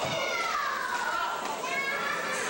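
A high-pitched, drawn-out shout that falls slowly in pitch, followed near the end by a shorter rising call, over the hall's crowd chatter.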